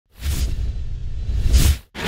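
Whoosh sound effects of an animated logo intro: a long rushing whoosh with a deep rumble underneath, swelling again near the end before cutting off sharply, then a short swish.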